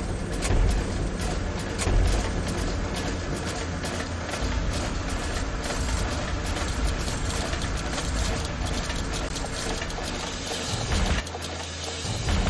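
A TV news title theme: music under mechanical sound effects, a dense run of clicks and ticks like gears and ratchets turning over a low steady rumble. It drops back about eleven seconds in.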